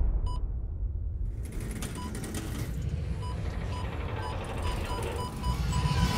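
Car parking-sensor beeping: short high beeps come faster and faster and merge into one steady tone near the end, the sign of the car closing in on an obstacle. Under it are a low rumble and film score music.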